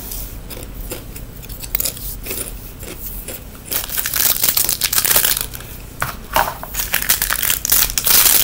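Hands crinkling and crumpling a pink LOL Surprise doll wrapper while peeling it open, a dense run of crackles that grows louder and busier about four seconds in.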